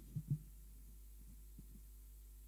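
Two soft low thumps shortly after the start, then a steady low electrical hum from the microphone and sound system.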